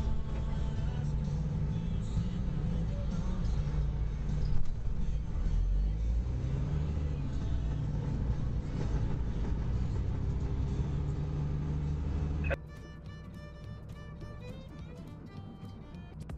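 Semi truck's engine and cab rumble heard from inside the cab while it rolls slowly, with one brief louder bump about four and a half seconds in. Near the end it cuts off suddenly and electronic music with a steady beat takes over.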